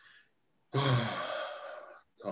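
A man's long audible sigh into the microphone: a brief voiced start, then a breathy exhale that fades over about a second. It is a hesitant pause while he thinks over an unresolved question.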